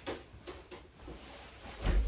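A few light knocks and clicks from someone moving about indoors, then a heavier thump near the end.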